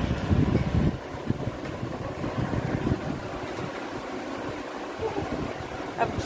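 Low rumbling noise of handling or wind on a phone microphone, loudest in about the first second, then easing to a steady faint rumble and hiss.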